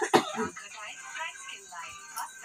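A person coughs, clearing the throat, just after the start. Quiet voices talk through the rest.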